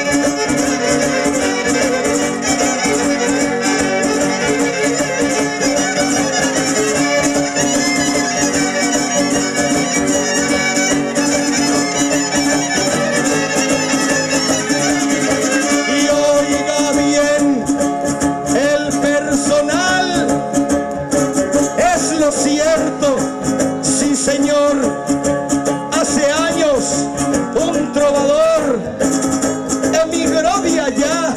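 Live huapango arribeño ensemble playing an instrumental passage: violins carry the melody over strummed guitars, with sustained notes in the first half and quick wavering, sliding violin phrases from about halfway through.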